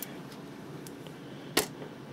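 Fold-up monitor lid of a Belkin 1U rack console being lifted open by hand. There is a light click at the start and a single sharp click about a second and a half in, over a steady low hum of running server equipment.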